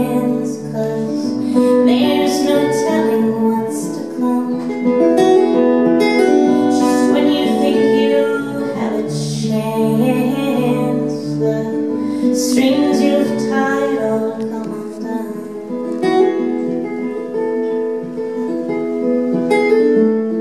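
A woman singing live over her own acoustic guitar, the guitar played in sustained chords throughout.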